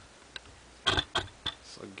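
A few sharp metal clinks of a wrench being fitted onto a nut on the lathe's headstock gear train. The loudest comes about a second in.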